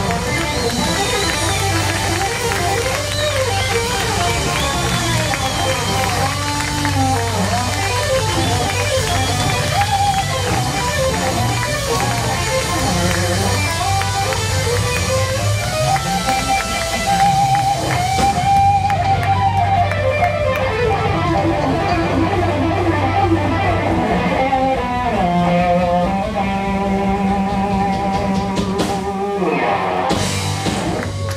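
A live rock trio playing: electric guitar lead lines that bend and glide in pitch over bass guitar and drums. About eighteen seconds in, the high cymbal wash drops away and the guitar carries on over the bass.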